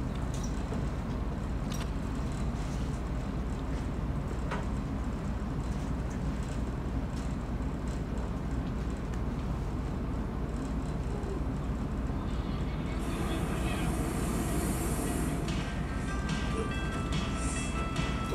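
Steady low rumbling room noise throughout. Faint music with held tones comes in about two-thirds of the way through.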